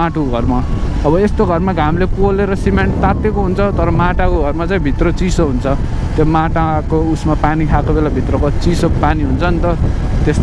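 A man talking almost without pause over the steady low rumble of a motorcycle ride.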